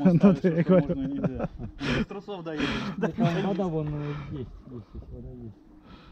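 People talking in Russian; the talk thins out near the end.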